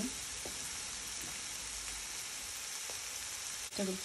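Chopped onion, red and yellow bell pepper and spring onions frying in a pan: a steady, even sizzle.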